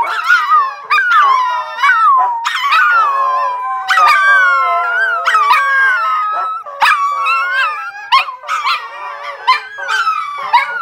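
A pack of Siberian huskies, with a chihuahua joining in, howling together. Several voices overlap, each sliding up and down in pitch, in one long unbroken chorus.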